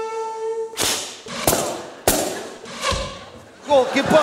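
Trembita (long wooden Hutsul horn) holding one steady note that cuts off just under a second in. Four heavy thumps follow over the next two seconds, and voices start near the end.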